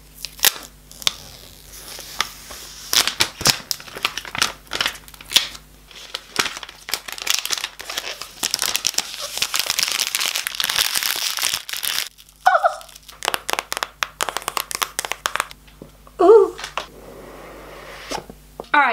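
Plastic shrink-wrap being peeled and torn off an iPhone box close to the microphone, crinkling and crackling in many sharp snaps, with a dense stretch of continuous crinkling in the middle.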